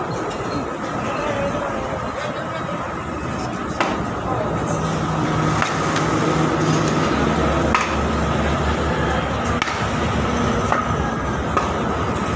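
Sporadic sharp knocks, about half a dozen a second or two apart, of a hand tool striking a wooden frame as it is broken apart, over a steady street din of voices.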